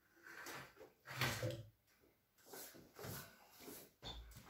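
Handling of a small electric water pump during reassembly: a series of short knocks and scrapes as the stainless-steel pump housing and motor body are worked together, the loudest about a second in.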